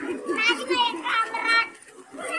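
Children's voices chanting together in a quick, even rhythm of short repeated syllables, pausing briefly near the end.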